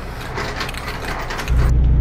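Inside a semi truck's cab: a run of light clicks and rattles, then about one and a half seconds in the low, steady drone of the truck's diesel engine comes up loud.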